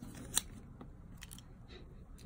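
A few light clicks and rustles from a leather bracelet with a metal buckle being picked up and handled, the sharpest click about a third of a second in.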